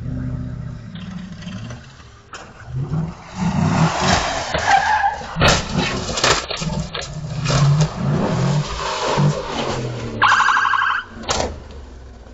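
A car's engine revving hard, its pitch rising and falling, with tyre noise as the car is driven off the road, and two sharp knocks a little under halfway through as it strikes something. Near the end a rapidly pulsing electronic tone sounds for about a second.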